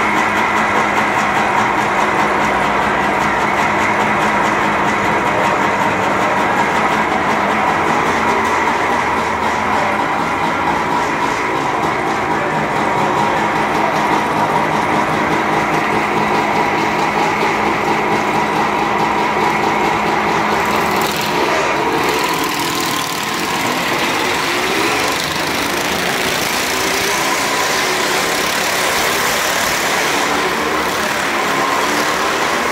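Several motorcycle engines idling together, a steady, loud mechanical drone. About two-thirds of the way through, the sound turns noisier and harsher as a motorcycle runs around the wooden wall.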